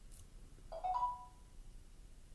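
A short electronic chime of a few quick notes stepping upward, lasting about half a second, a little under a second in.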